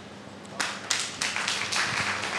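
Audience applause, many hands clapping, starting about half a second in.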